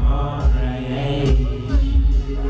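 Live hip-hop music through a club PA: a heavy bass beat with a rapper's vocal line chanted over it.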